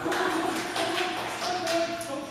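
A dog running through a fabric agility tunnel: a run of light taps and knocks, with a held, pitched tone over them.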